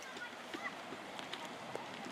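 Faint voices over a steady outdoor background hiss, with a few short clicks.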